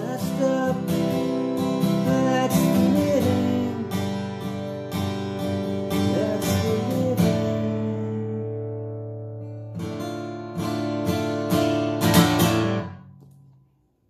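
Yamaha acoustic guitar strummed in chords at the close of a song. About eight seconds in, a chord is left ringing and fades. After about two seconds the strumming starts again, and it stops abruptly near the end.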